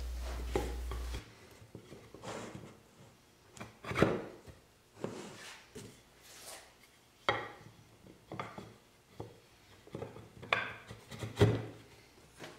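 Wooden bench parts being dry-fitted by hand: stringers with sliding-dovetail ends set and slid into the shaped leg pieces, giving a string of separate wooden knocks and rubs, the loudest about four seconds in. A low hum cuts off suddenly about a second in.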